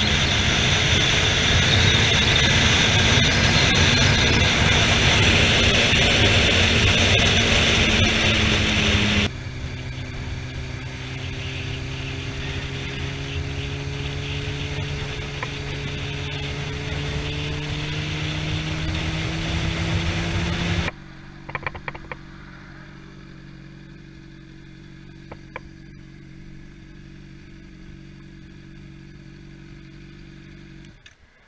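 Motorcycle engine running at road speed under heavy wind noise, in three edited stretches that cut off abruptly about nine and about twenty-one seconds in, each quieter than the one before. In the middle stretch the engine note rises slowly. The last stretch is a steady, quieter engine note, with a few clicks just after the cut.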